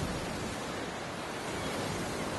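Steady rush of ocean surf, an even noisy wash with no distinct breaks.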